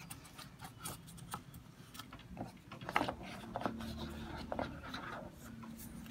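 Hands handling a cardboard gift box insert and a paper manual: faint rustling and rubbing with scattered light taps, a few sharper ones about halfway through.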